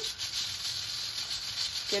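Pressure cooker's lid valve hissing steadily as steam escapes, the sign that the cooker has come up to pressure and the beans have started to boil.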